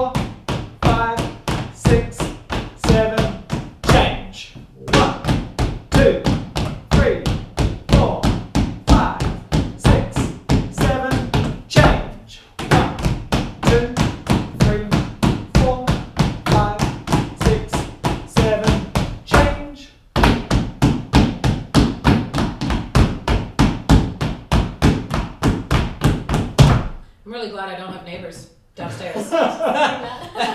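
Shoes tapping on a hardwood floor as several dancers practise tap triplets, three quick taps to each beat, in a fast even rhythm. The tapping comes in phrases broken by short pauses about every eight seconds.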